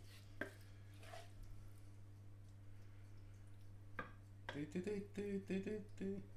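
Wooden spoon scraping and knocking in a frying pan and a ceramic baking dish as minced-lamb sauce is spooned out and spread. A single knock comes about half a second in, then a run of quick knocks and scrapes near the end, over a steady low hum.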